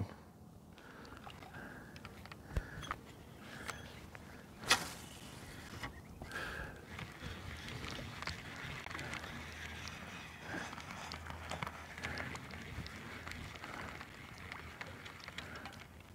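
Faint lapping and small splashes of shallow water, with scattered small clicks and a sharper tick about five seconds in.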